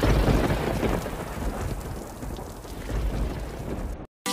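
Thunderstorm: rain with low thunder, starting and cutting off abruptly.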